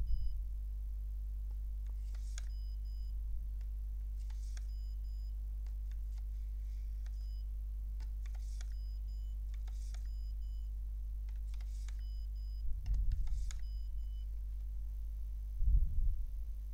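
A magnetic stripe card swiped several times through a serial (RS-232) card reader, each swipe a short faint swish, over a steady low electrical hum.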